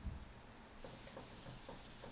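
A whiteboard being wiped clean with quick back-and-forth rubbing strokes, about four or five a second, that start about a second in after a soft knock.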